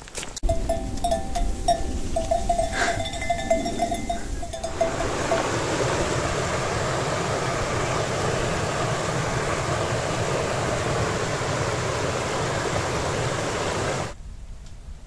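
River water rushing steadily over a small rocky weir, starting about five seconds in. Before that comes a short string of repeated high notes over a low rumble.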